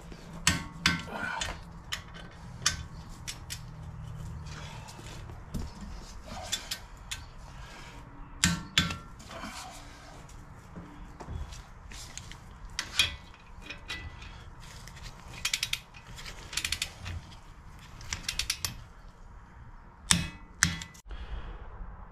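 A hand wrench working the wheel hub's rear mounting bolts: sharp metallic ratchet clicks and tool clanks in scattered bursts, some in quick runs of several clicks.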